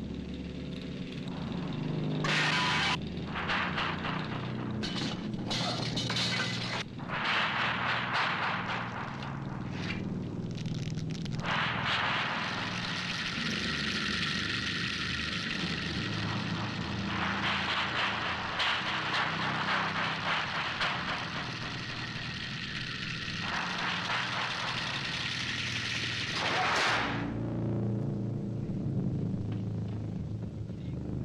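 Horror film soundtrack: a low steady drone under a run of short, harsh noise bursts, then a long harsh grinding noise that cuts off suddenly a few seconds before the end.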